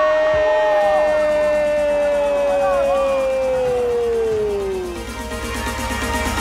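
A Brazilian TV football commentator's long drawn-out "gol" cry, held on one note and slowly sinking in pitch until it tails off about five seconds in, over background music. Electronic music carries on after it.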